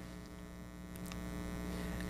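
Steady electrical hum: a constant low drone with evenly spaced overtones and nothing else.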